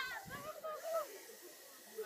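Faint, distant voices over a steady hiss, with the voices loudest in the first second.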